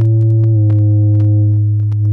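Software modular synthesizer holding one low, steady note with a few overtones after gliding up into it. Sparse crackling static clicks run over the note, a staticy texture from waveshaping.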